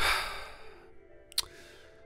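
A man's sigh: a breathy exhale that starts suddenly and fades out within a second, followed by a brief breath sound about a second and a half in, over soft background music.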